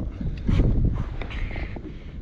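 Low rumbling wind noise on the microphone with a few short knocks and rustles from a large musky being lifted and handled in a boat.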